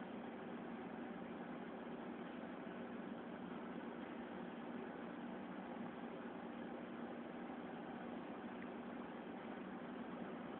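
Steady background hiss with a faint low hum underneath, unchanging throughout, with no distinct events.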